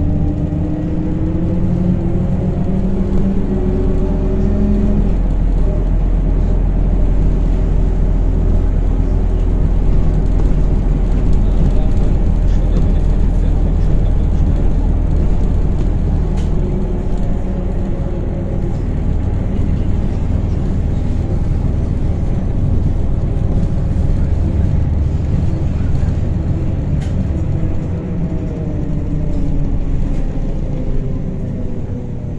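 The cabin of a MAZ-103T trolleybus under way: a steady low running rumble with a fainter whine whose pitch slowly shifts, clearest in the first few seconds and again near the end.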